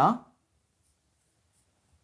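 A spoken word trailing off, then near silence with a few faint, brief scratches of a marker on a whiteboard.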